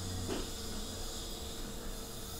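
Steady low background hiss of room tone and microphone noise, with a faint hum.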